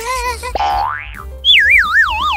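Cartoon comedy sound effects for a slip and fall, over background music: a short wobbling boing, then a whistle gliding up in pitch, then a warbling whistle that falls in pitch near the end.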